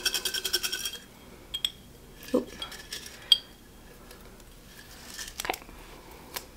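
Folded paper slips rattling inside a glass mason jar as it is shaken, a rapid clinking rattle that stops about a second in. After that come only a few faint clicks and rustles.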